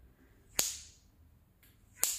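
A sharp snap of a latex surgical glove being stretched and let go against the hand, about half a second in, followed by a much fainter click near the end.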